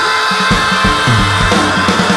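Blues band playing instrumentally: a held keyboard chord rings on while low, sliding bass notes and drum hits come in about half a second in.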